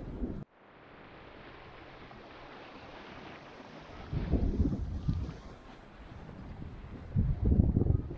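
Wind buffeting the microphone over a steady hiss of water rushing past a racing yacht's hull under sail. A sharp cut comes about half a second in, and louder gusts come about four seconds in and again near the end.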